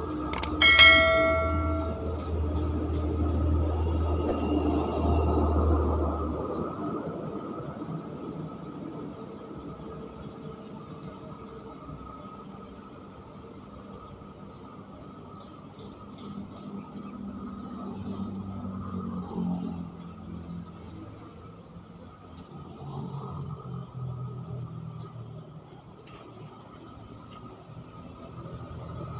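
A short chime-like sound effect from a subscribe-button animation about a second in: a click, then a bell-like ding lasting about a second. Under it runs a low rumble that fades after about six seconds, leaving quieter low rumbling and background noise.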